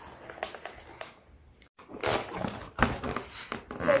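Cardboard box being opened by hand: scattered rustles, scrapes and knocks of cardboard and packaging, busier and louder from about halfway.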